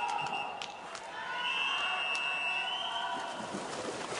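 Murmur of a crowd in an indoor swimming arena. From about a second and a half in, a single steady high whistle sounds for nearly two seconds: the referee's long whistle calling the backstroke swimmers into the water.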